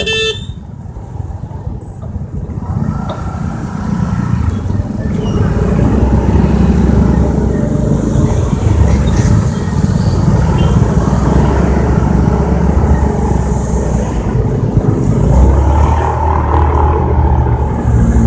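Riding through wet town traffic: the motorcycle's engine and wind rumble on the microphone, growing louder after a few seconds as speed picks up, with a short horn toot about three seconds in.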